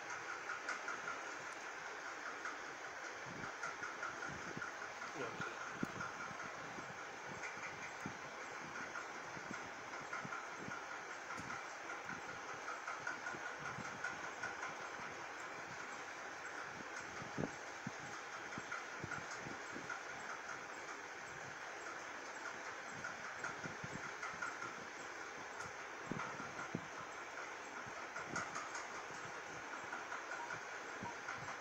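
Steady mechanical room noise with a brighter hum band, broken by scattered soft low knocks and clicks.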